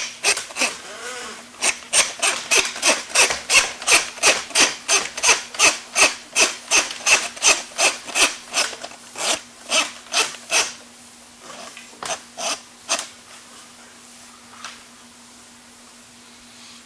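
Steel drain-snake cable being drawn back out of a drain pipe into a handheld drum auger, scraping in quick regular strokes, about two or three a second. The strokes thin out after about ten seconds and stop a few seconds later.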